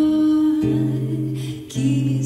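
A woman's voice singing long held wordless notes over acoustic guitar accompaniment, changing pitch about half a second in and again near the end, with a short break between notes just before.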